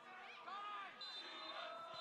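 Faint open-stadium ambience during a break in the commentary: distant voices of players calling out on the pitch. A faint steady high tone comes in about a second in.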